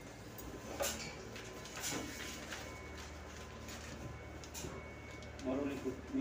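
A few short, sharp rustles and scrapes, about a second apart early on, from hands working foil-faced insulation on an air duct, over a steady low hum. A man's voice comes in near the end.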